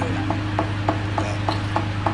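Steady rhythm of light, sharp knocks, about three a second, over a constant low electrical hum.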